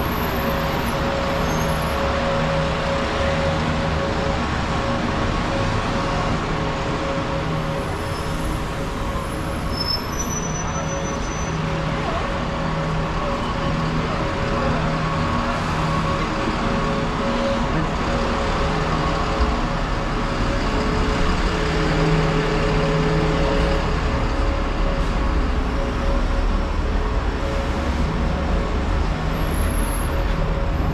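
City street traffic, with a double-decker bus's engine running close by as a steady hum over the noise of passing cars.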